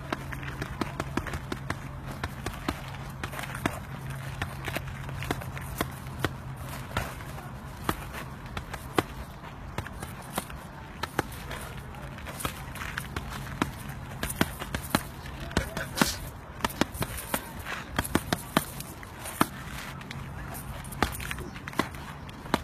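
A long run of punches landing on a body: sharp, irregular smacks, up to two or three a second, over a steady low hum.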